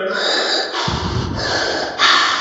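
A man breathing loudly and noisily close to the microphone: a long rushing breath, with a rougher, lower rasp through the nose about a second in.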